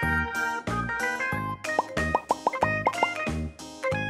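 Cheerful background music with sustained keyboard-like notes over a steady beat. In the middle comes a quick run of about seven short rising bloops.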